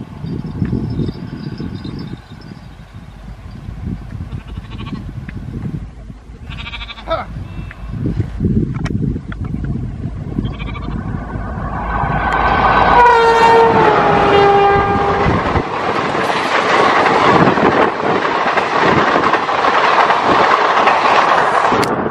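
Indian Railways WAP-4 electric locomotive hauling an express passenger train past close by. About halfway through, its horn sounds for about three seconds and drops in pitch as it passes, followed by the loud rush and clatter of the coaches rolling past at speed.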